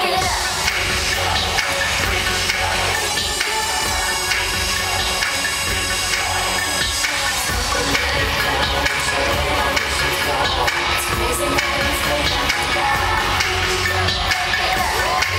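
Live pop concert music played loud over an arena PA system, with a steady heavy bass line.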